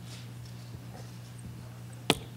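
A steady low electrical hum with a few faint taps and knocks as a person steps up to a lectern and handles things at it.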